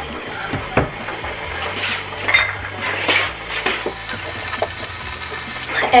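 A drinking glass knocking and clinking as it is taken down from a kitchen cupboard. Then water runs into the glass for about two seconds and stops abruptly near the end.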